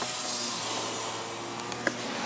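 Car's electric window motor running as the side window lowers: a steady whirring hum with hiss, and a click near the end.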